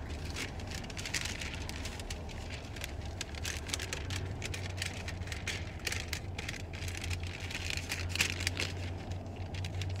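Long paper receipt rustling and crackling as it is handled and unrolled, in many short crisp crackles, over a low steady hum.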